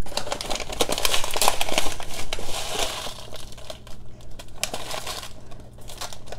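A quarter-cup measuring cup scooping dry black rice out of a crinkling plastic rice pouch, a dense rustling and crackling that dies down near the end as the scoop is levelled off.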